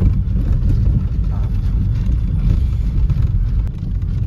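Inside a moving car on a rough unpaved track: a steady low rumble of engine and tyre noise.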